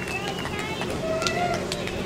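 Indistinct voices of spectators and players calling out, with a few drawn-out shouts, over a steady outdoor background.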